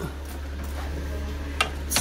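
Workshop room tone: a steady low hum under faint background noise, with two short clicks near the end.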